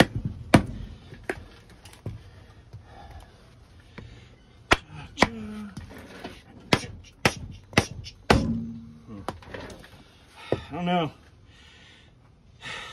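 Hammer blows driving a Mora knife through a piece of wood on a chopping block: about ten sharp knocks at uneven spacing, coming quickest a little past the middle.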